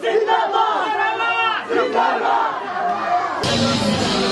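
A marching crowd of men shouting slogans together, loud voices overlapping and rising and falling. Near the end, loud music cuts in abruptly.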